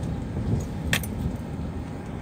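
Car driving over a potholed, patched road, heard from inside the cabin: a steady low rumble of engine and tyres, with one short sharp clink about a second in.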